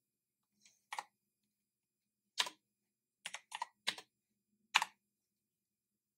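Computer keyboard keystrokes: about six separate key presses, slow and spaced out, some coming as quick pairs.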